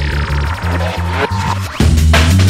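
Drum and bass DJ mix: a pulsing bassline with turntable scratching over it, then a louder full drum-and-bass beat drops in near the end.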